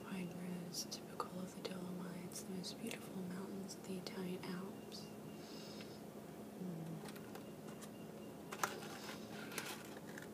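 Very soft, whispered speech for about the first half, with light taps and rustles of a cardboard praline box being handled. Two sharper cardboard clicks come near the end as the box's flaps are folded.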